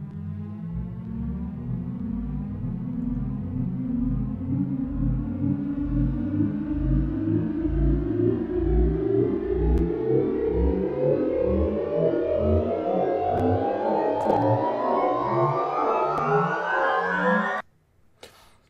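Synth music loop played through Ableton's Shifter frequency shifter on its Twisted Riser preset: a pulsing low bass pattern under a band of sound that keeps climbing in pitch, a never-ending rising sound. It stops suddenly just before the end.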